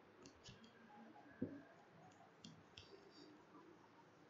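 Near silence with a few faint, sharp clicks scattered through it and one soft, low thump about a second and a half in.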